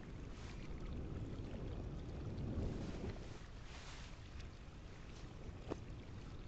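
Low rumbling background ambience with no words, swelling a little in the middle and easing off, with a faint click near the end; the film's audio plays backwards.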